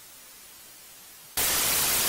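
Two-way police radio channel: a faint hiss, then about a second and a half in a loud burst of static, about a second long, that cuts off sharply. It is the squelch noise of a transmitter keying up just before the next unit answers.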